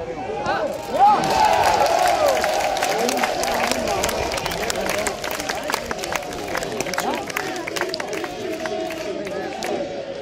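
Football crowd cheering and shouting at a goal, with scattered clapping. The noise jumps up about a second in and then slowly dies down.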